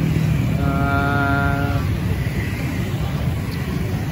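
Steady street-traffic noise from passing motorbikes and cars. A held tone of one steady pitch sounds for just over a second about half a second in.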